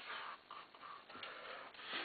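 Faint handling sounds of a plastic paintball hopper and speed feed being turned in the hands: a few light clicks and rustles.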